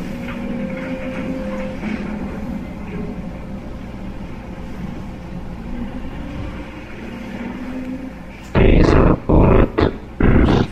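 Dark ambient drone with low held tones. About eight and a half seconds in, a sudden, very loud, harsh growl sounds in several short pulses: a jump scare.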